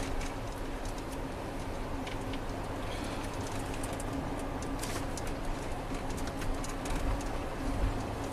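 Steady hum inside the cabin of a parked Ford police car, its engine or fan running, with a few faint clicks.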